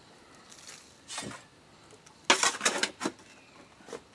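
Shovel scooping sand from a wheelbarrow and tipping it into a plastic barrel: a short scrape about a second in, then a cluster of scraping and pouring strokes a little past halfway.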